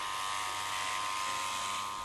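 Electric shearing handpiece running steadily, an even buzz with a constant high whine.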